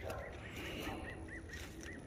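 A bird calling in the background: a quick run of short, repeated notes, about five a second.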